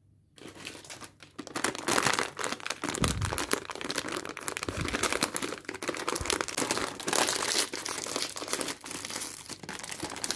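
Plastic snack bag crinkling and rustling in the hands as it is torn open. The dense run of crackles starts about a second in, after a near-silent moment.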